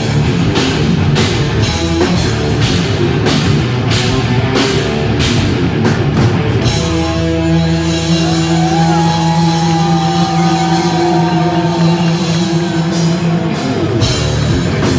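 Live hard rock band with distorted electric guitars and a drum kit playing an instrumental section. About seven seconds in, the drums drop out, leaving held guitar chords under a lead guitar line that slides up and down in pitch, and the full band comes back in near the end.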